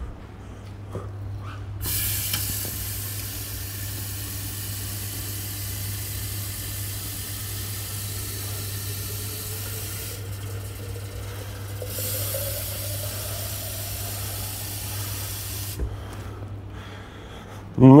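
Water running into a sink to test freshly repaired plumbing for leaks: a steady hiss that starts about two seconds in and stops shortly before the end, with a tone that rises slowly as the basin fills. A steady low hum runs underneath.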